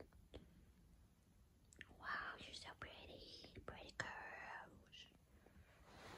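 Soft whispering from about two seconds in to about five seconds in, breathy and without voice, with a few faint clicks around it.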